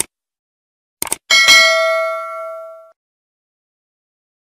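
Subscribe-button sound effects: sharp clicks at the start and about a second in, then a notification-bell chime that rings out and fades over about a second and a half.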